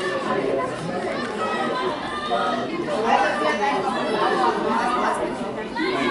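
Several people talking at once close to the microphone: steady overlapping chatter of spectators, with no single voice standing out.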